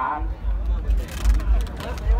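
Wind buffeting the microphone: uneven bursts of low rumble with short gusts of hiss, over faint voices.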